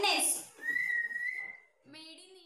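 One whistled note, about a second long, that rises slightly and then holds steady, following a brief bit of speech.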